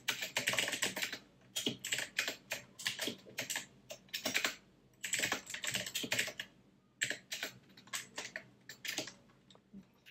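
Typing on a computer keyboard: bursts of quick keystrokes with short pauses between them.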